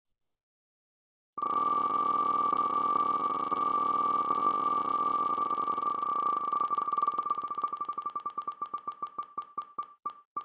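Digital prize-wheel spinning sound effect. After a short silence, ticks start so fast they blur into a steady ringing tone, then slow into separate clicks that spread further apart as the wheel winds down.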